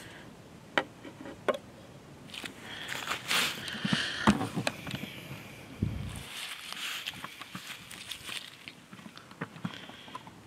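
Folding knives being set down and shifted on a wooden table: a few light clicks and knocks, with soft rustling between them and a dull thump about six seconds in.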